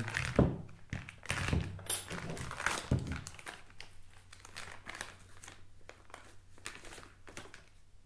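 Plastic parts bag crinkling and rustling as it is handled and opened, with a few dull knocks in the first three seconds, then quieter rustling.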